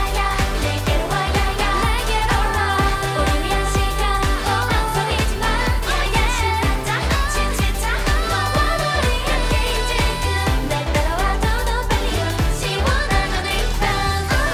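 K-pop girl-group dance-pop song: female voices taking turns singing over an electronic backing track with a steady, heavy bass beat.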